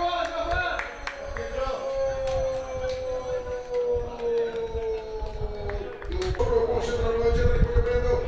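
A sports commentator's voice holding one long, slowly falling shout as a goal goes in. It breaks off about six seconds in and is taken up again on a second held note.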